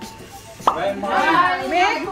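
A single sharp click about two-thirds of a second in, then busy overlapping voices with background music.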